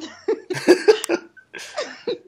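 A person laughing in a run of short, choppy bursts, with another brief burst near the end.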